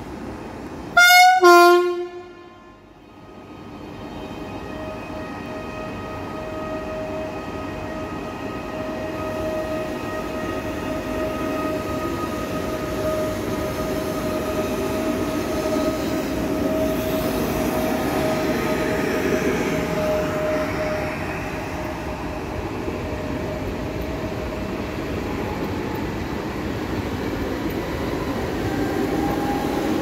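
PKP Intercity PESA Dart (ED161) electric multiple unit sounding one short, very loud horn blast about a second in, then passing close by: a rumble of wheels on rail that builds up, with a steady whine from the train running through the middle.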